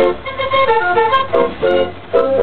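Dance organ (dansorgel) playing a tune: its pipes sound short, horn-like chords in a steady rhythm over low bass notes.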